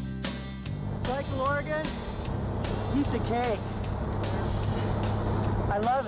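Background music cuts off within the first second, leaving the steady running noise of a motor vehicle with indistinct voices over it at intervals.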